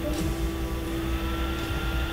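Steady machine hum: a low rumble under a constant mid tone, with a faint higher tone joining about halfway through.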